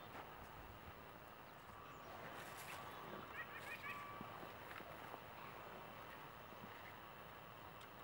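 Quiet outdoor ambience, close to silence, with a few faint high chirps about three and a half seconds in and some faint scattered ticks.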